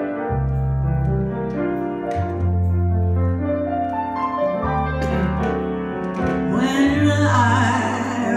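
Piano playing a slow ballad accompaniment, with held chords over deep bass notes that change every second or two. About five seconds in, a melody with a wide vibrato comes in over it.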